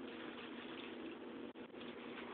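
Faint steady hiss with a low hum underneath, no distinct event: background noise of the recording.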